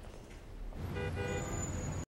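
City traffic: a low rumble of road traffic with a car horn sounding in short blasts from about a second in.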